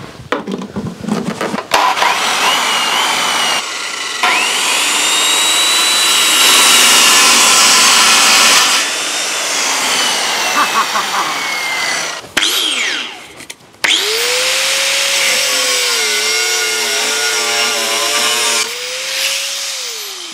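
An old corded circular saw spins up and cuts through hardwood for several seconds, then winds down. After that an angle grinder runs with a steady whine for about five seconds and winds down near the end. Both run off a battery power station without cutting out.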